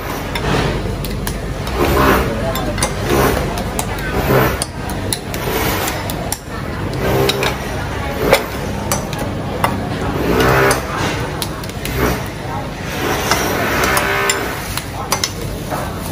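Background voices and kitchen clatter: a spoon tapping and scraping shrimp and fish paste flat against the walls of ceramic bowls, with many sharp clicks and knocks over a steady low hum.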